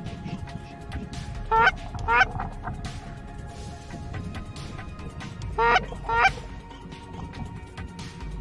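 Canada goose call blown close by: two quick double honks, one pair about a second and a half in and another about five and a half seconds in, each honk breaking sharply upward in pitch.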